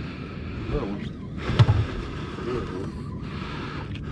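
Faint, brief voices over a steady background hiss, with a single sharp knock about a second and a half in.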